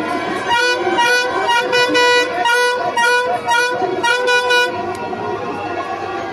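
A horn honking in a quick series of about seven short blasts, all on one pitch, over crowd noise.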